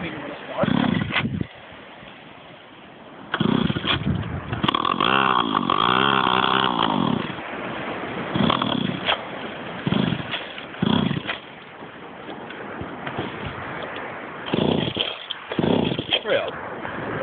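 Small petrol engine of a stand-up scooter being pull-started in repeated short attempts. About three seconds in it catches and runs for a few seconds, its pitch rising and falling, then dies. Shorter sputters follow: a hard-starting engine.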